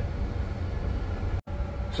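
Steady low rumble of a tractor's engine heard from inside the cab. It cuts out for an instant about one and a half seconds in.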